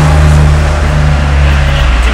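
A motor vehicle's engine running steadily with a loud low hum.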